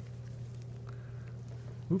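Steady low background hum in the room, with no distinct sound event over it.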